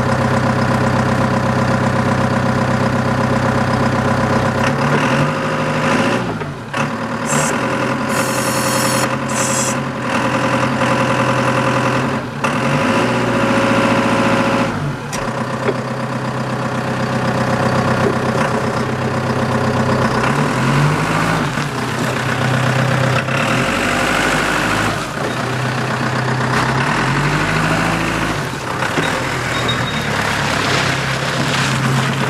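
Hyster H110XM diesel forklift engine idling, then revving up and down several times as the forks are raised and the machine drives and turns. A brief hiss comes about eight seconds in.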